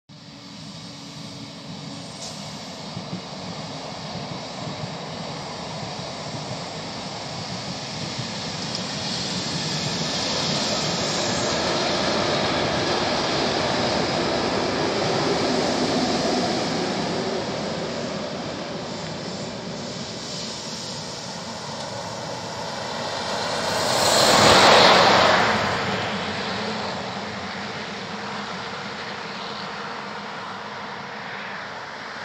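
ÖBB push-pull passenger train with a Class 1144 electric locomotive at the rear passing by: a rolling rumble of wheels on rails that builds over the first dozen seconds, holds, then fades. About 24 seconds in, a brief rushing swell rises and falls over about two seconds, the loudest moment.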